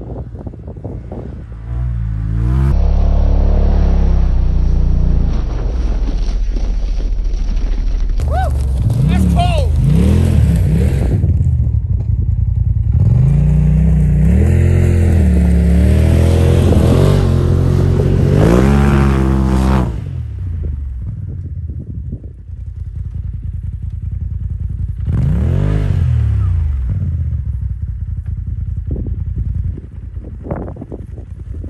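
Polaris RZR Turbo side-by-side's engine revving hard again and again, its pitch climbing and falling, as it drives through deep snow drifts. It eases off about twenty seconds in, then revs up once more near the end.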